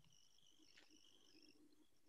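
Near silence: faint room tone with a faint high-pitched steady tone that wavers and breaks off now and then.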